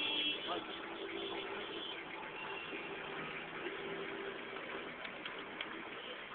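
Engine and road noise heard from inside a moving vehicle's cabin: a steady hum under a noisy haze, with faint voices underneath.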